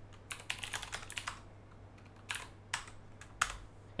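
Typing on a computer keyboard: a quick run of keystrokes in the first second or so, then a few separate key presses spread over the rest, as a terminal command is typed and run.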